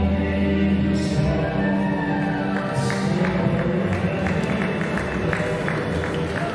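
Viennese waltz music played for the dancers, with long held notes at first, then a steady beat of short ticks coming in about halfway.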